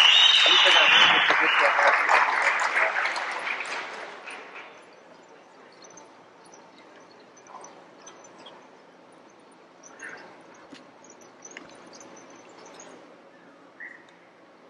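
Audience applause and cheering in a hall, dying away over about four seconds and leaving faint room noise with a few scattered small sounds.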